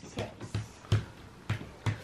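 A plastic playing piece tapped space by space along a Mouse Trap game board: about five light clicks, roughly half a second apart, as a roll of six is counted out.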